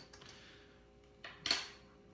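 Screw cap of a glass ink bottle being twisted off: a faint scrape, then a small click and a sharper knock about a second and a half in.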